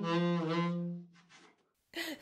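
Saxophone finishing a short solo phrase: a note that drops to a low held tone and stops about a second in, followed by a near-silent pause.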